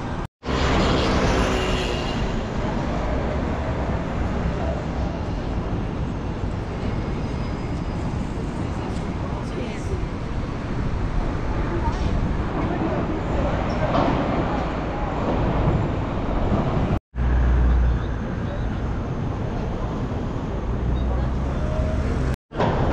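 Busy city street ambience: steady traffic noise with passers-by talking. The sound cuts out suddenly for an instant twice, once just after the start and once near the end.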